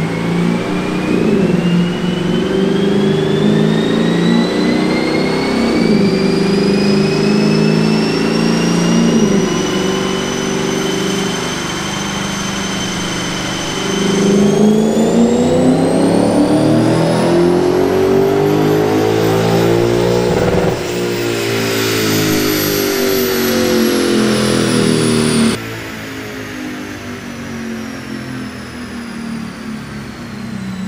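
Lexus GS F's 5.0-litre V8 making a fourth-gear pull on a chassis dyno through an aftermarket catback exhaust, with a deep tone. The revs climb slowly, then much faster from about halfway in, peak about two-thirds of the way through and fall away as the throttle is closed, with a high whine rising and falling along with them. The sound drops sharply in level shortly before the end.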